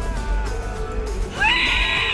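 Background music with a steady bass. About one and a half seconds in, a loud, high, wavering cry rises above it and holds to the end.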